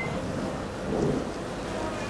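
Steady low rumbling background noise, with a brief faint murmur about a second in.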